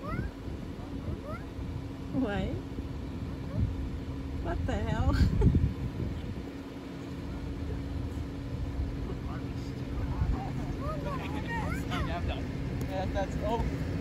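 People calling out and laughing at a distance in short spells, loudest about five seconds in, over a steady low hum from the idling car the recording is made from.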